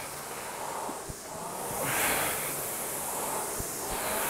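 Concept2 indoor rower's air flywheel whirring, swelling with one drive stroke about halfway through and easing off on the recovery, with a couple of faint knocks from the machine.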